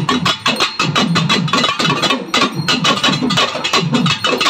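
Several pambai, Tamil paired cylindrical folk drums, played together in a fast, dense rhythm of about ten strokes a second, with low ringing drum tones under the sharp strokes.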